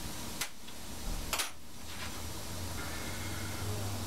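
Two light clicks of small metal parts being handled on a metal workbench, about half a second and a second and a half in, over a steady low hum.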